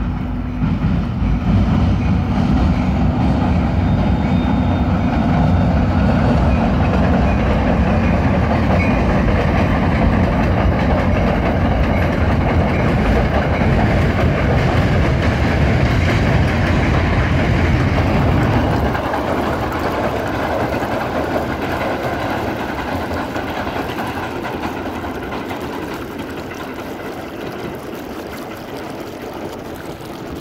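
New Jersey Transit commuter train crossing a steel truss railroad bridge overhead, a loud low rumble that holds for about twenty seconds and then fades steadily away as the train moves off.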